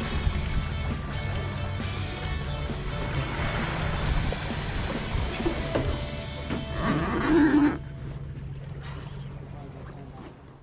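Background music with a steady bass line. A brief voice-like passage rises over it about seven seconds in, and after it the music carries on more quietly.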